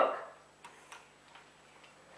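A quiet pause in a small room with a few faint, short clicks, after a man's last spoken word fades out.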